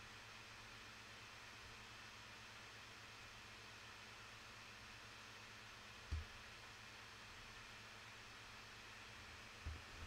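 Near silence: steady faint microphone hiss, with one brief low thump about six seconds in and a smaller one near the end.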